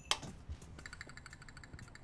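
A light switch clicks once, sharply, in a pause in the background guitar music. Faint high, sustained ringing tones follow.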